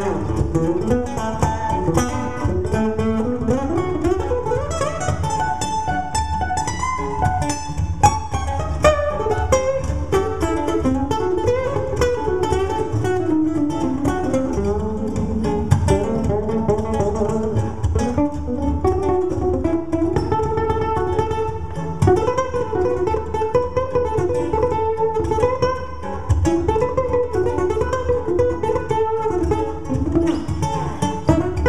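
Cuntz Oveng Custom 34-fret steel-string acoustic guitar played fingerstyle as a solo: a continuous stream of picked melody notes over bass notes, with a rising run of notes a few seconds in.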